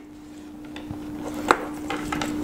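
Handling noise of a wristwatch being turned and lifted on a wooden tabletop: soft rubbing of the metal case and leather strap, with one sharp tap about one and a half seconds in, over a faint steady hum.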